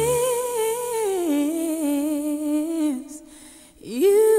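A solo female singing voice with vibrato from a Christmas pop song, with little accompaniment. It holds a long note, slides down to a lower held note about a second in, and fades out near three seconds. A new note swoops up just before the end.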